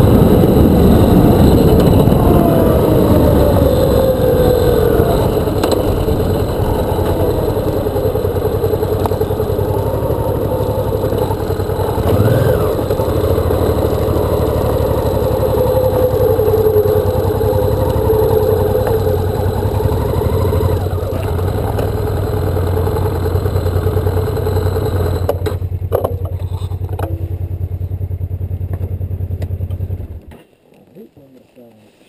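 Motorcycle engine and wind noise heard from the rider's seat as the bike slows, its engine note falling over the first few seconds, then running steadily. The wind noise stops about 25 seconds in as the bike comes to a stop, and the engine is cut off at the very end.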